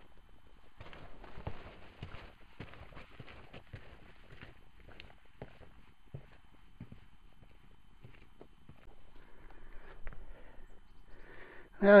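Footsteps of a hiker on a rocky dirt trail, an uneven run of crunches and knocks that grows fainter as he walks away.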